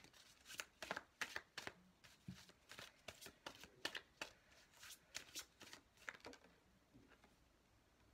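Tarot deck being shuffled by hand: a quick, soft run of card flicks and slaps that stops about six and a half seconds in.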